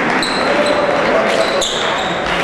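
Fencers' shoes squeaking on the piste during footwork: several short, high squeaks. Under them is a steady murmur of voices in a large sports hall.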